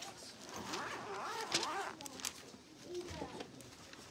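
Quiet, indistinct speech in a small room, with a few light clicks.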